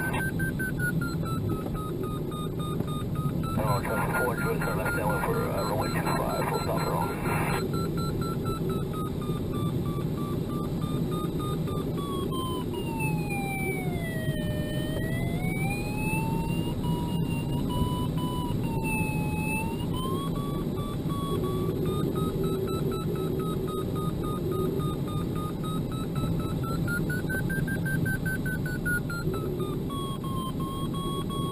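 A glider's audio variometer sounding one continuous tone that wavers smoothly up and down in pitch, dropping lowest about halfway through and rising again. The pitch tracks the sailplane's rate of climb or sink. Steady airflow noise from the ASW-27B's cockpit runs underneath.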